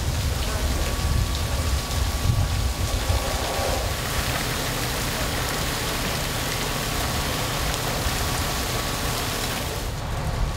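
Fire-hose water spraying and falling like heavy rain, over a steady low rumble, with a faint steady whine.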